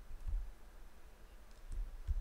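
A few faint computer mouse clicks with soft low thumps, one about a third of a second in and another near the end.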